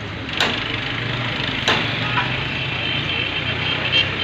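Steady low mechanical hum of workshop background noise, with two sharp knocks about a second and a half apart.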